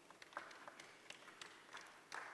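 Faint, sparse hand clapping from a few people, a handful of irregular claps.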